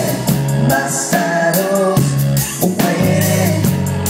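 A live rock band playing a song: electric guitar and drum kit keeping a steady beat, with a voice singing over them.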